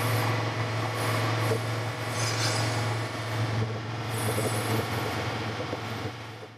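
Vertical electric irrigation pump motor running after being switched on, a steady low hum over an even mechanical noise.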